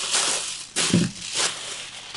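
Plastic air-column packaging (inflatable bubble wrap) crinkling and crackling as it is handled, in two bursts within the first second and a half.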